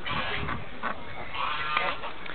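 White domestic ducks quacking repeatedly in short, overlapping calls.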